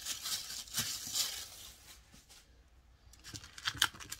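Packaging rustling and crinkling as tissue paper and a gift bag are handled, busiest in the first second and a half, quieter in the middle, then a few sharp crinkles near the end.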